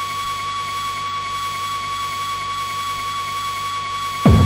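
Drumless breakdown in an early-1990s hardcore/breakcore electronic track from a cassette: a steady high synth tone held over a fine, fast-pulsing buzz, with no kick drums.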